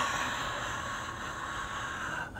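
A long breathy exhale, a sigh, heard as a steady hiss that fades slowly.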